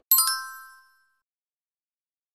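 A bright, high-pitched chime sound effect for a like-button click: a quick cluster of ringing tones that dies away within about a second.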